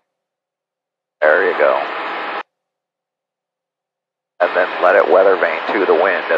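Speech heard through an aircraft headset intercom, thin and radio-like: a short phrase about a second in, then more talk starting after about four seconds. The sound cuts to dead silence between phrases, as a voice-activated intercom gate does.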